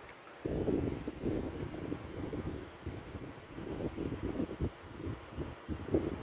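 Irregular low rumbling noise on the phone's microphone, starting abruptly about half a second in and fluctuating throughout.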